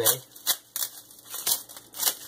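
Paper and plastic wrapping crinkling in the hands as a small, well-taped package is pulled open, in about five short, sharp rustles.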